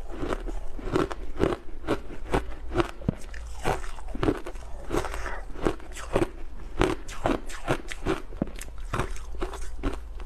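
Refrozen crushed ice being bitten and chewed close to the microphone: a continuous run of sharp, crisp crunches, a few every second.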